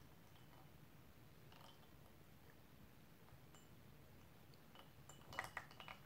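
Near silence broken by a few faint porcelain clinks near the end, as a porcelain gaiwan and its lid are handled to pour tea.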